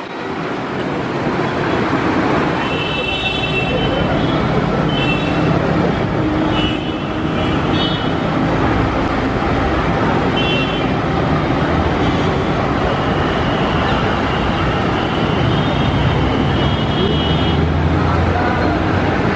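Diesel buses and city traffic: a state transport bus drives past, then a private coach bus pulls through the junction, engines running over a steady road rumble that grows heavier near the end as the coach comes close. Short high-pitched tones come and go over the traffic.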